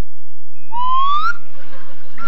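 A single whistle sliding upward in pitch, lasting about half a second, starting just under a second in.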